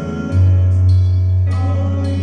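Live gospel worship music from a keyboard and drum kit: sustained keyboard chords, a deep bass note that comes in about a third of a second in and holds, and occasional cymbal hits.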